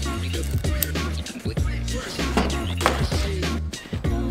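Background music with a steady beat and a deep, held bass line.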